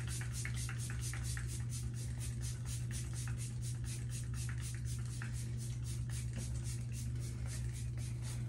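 Pump spray bottle of makeup setting spray misting onto the face in rapid, evenly spaced spritzes, several a second, over a steady low hum.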